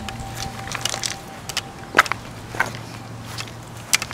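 Handling noise and footsteps on grass as a handheld camera is carried across a lawn: scattered clicks and crackles, the sharpest about two seconds in, over a steady low hum.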